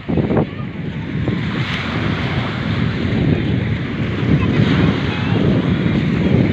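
Wind buffeting the microphone over the steady wash of waves on the shore.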